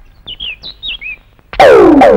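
A few short bird chirps, about five quick high notes that dip in pitch. About one and a half seconds in, they are cut off by a sudden loud electronic drum or synthesizer hit whose pitch falls as it dies away.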